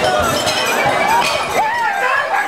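A man's wordless cries swooping up and down in pitch, mostly in the second half, over a bright clink and thinning light music.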